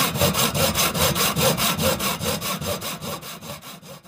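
A fast, even run of rasping strokes, about five a second, growing fainter toward the end.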